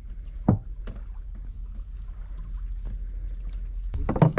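Water lapping against a small fishing boat's hull over a steady low rumble, with a single sharp knock about half a second in.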